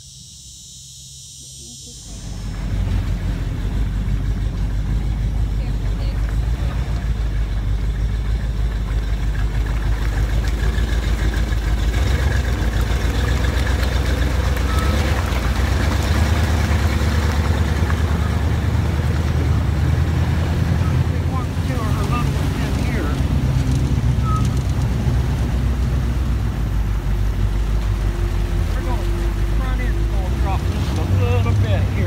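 A swamp-tour vehicle's engine starts running about two seconds in, then runs loud and steady as a low drone while the vehicle travels.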